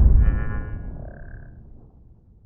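Logo-intro sound effect dying away: a deep rumble fading steadily, with a short high shimmering tone in the first second and a brief single ringing tone over it about a second in.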